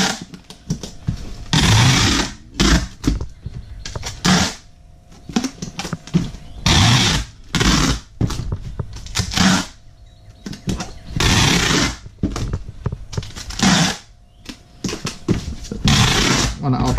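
Three-inch clear packing tape pulled off a handheld tape-gun dispenser and run across a cardboard box: a series of loud, screechy tape pulls, each up to about a second long, with short knocks of the dispenser against the box between them.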